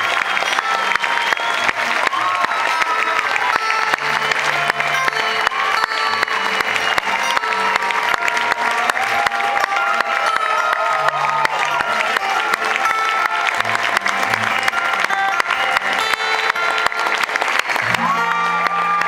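Live audience clapping and cheering in a club after a song, a dense, steady wash of applause with wavering shouts and whoops in it. A few held low notes from the stage sound beneath it.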